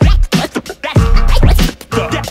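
Hip hop track with turntable scratching over a heavy bass-and-drum beat, the scratched sound sliding up and down in pitch in short repeated strokes.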